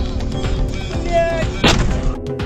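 Background electronic music with a steady beat. About three-quarters of the way through, a single sudden loud bang cuts through it, a crash-like impact with a short smear of noise after it. A brief held tone sounds shortly before the bang.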